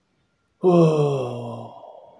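A man's long voiced sigh, starting about half a second in with a sudden onset, then sliding down in pitch and fading away over about a second and a half.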